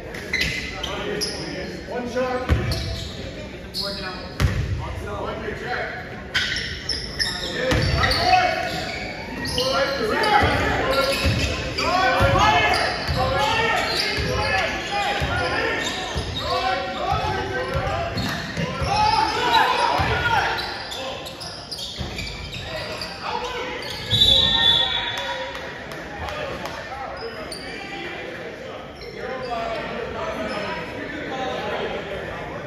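Basketball bouncing on a gym's wooden floor, the thuds echoing in a large hall, with players and onlookers calling out. A brief shrill high tone cuts in about three-quarters of the way through.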